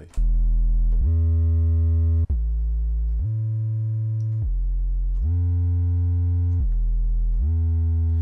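Synthesized sub bass from FL Studio's 3x Osc, played mono with portamento so each note slides into the next. It runs through a distortion effect and sounds buzzy. The line is about eight notes, alternating low and high an octave apart: E, A, F and back to E.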